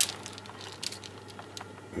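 Grated cheese being sprinkled from a plastic container onto a pizza: light scattered ticks and rustling as the shreds land, with a brief knock right at the start.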